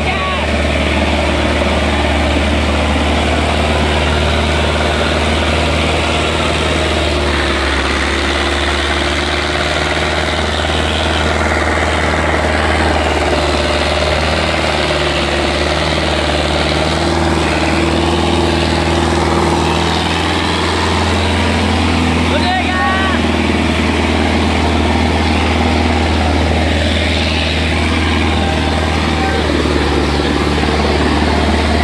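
Sonalika DI 750 tractor's diesel engine running steadily under heavy load as it drags a disc harrow through soil, a constant low labouring drone; the thick black exhaust smoke marks it working flat out.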